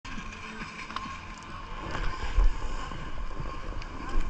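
Skis scraping and sliding over hard-packed groomed snow, with wind buffeting the microphone in a low rumble that is loudest about two and a half seconds in.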